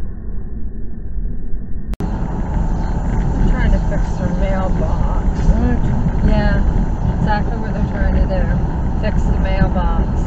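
Steady road and engine rumble of a car heard from inside the cabin, muffled for the first two seconds. A brief dropout about two seconds in cuts it off, and then the driving noise carries on, clearer, with people talking over it.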